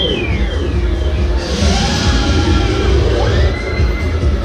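Loud music with a heavy bass beat and gliding tones. A rush of noise comes in about a second and a half in and fades by about three seconds.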